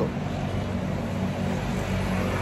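A steady low mechanical hum with an even background noise, like a motor or engine running.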